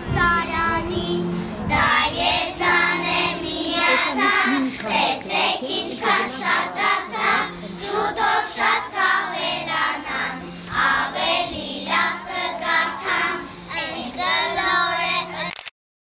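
A group of young children singing together in chorus. The sound breaks off abruptly just before the end.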